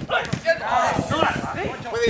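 Footballers' voices shouting and calling to each other during a passing drill, with a sharp strike of a football at the very start.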